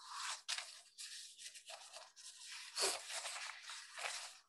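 Faint, irregular scratchy rustling noise coming through a video-call microphone, in uneven bursts with no clear speech.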